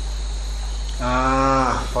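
An elderly monk's voice holds one long, drawn-out 'aah' filler for about a second, starting about a second in, its pitch falling slightly. Under it runs a steady low hum.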